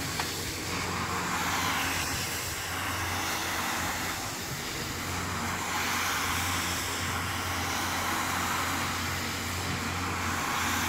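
Single-disc rotary floor scrubber running steadily with a constant motor hum, its brush scrubbing a soapy, foam-covered rug. The scrubbing noise swells and fades every few seconds as the machine is swept back and forth.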